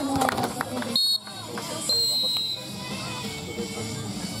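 Referee's whistle blown twice to end the rally: a short blast about a second in, then a longer one about two seconds in. Players' shouts and voices are heard around it.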